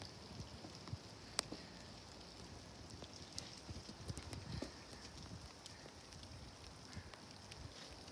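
Faint wing noise of a small flock of tumbler pigeons flying low overhead, with scattered sharp clicks, the clearest about a second and a half in.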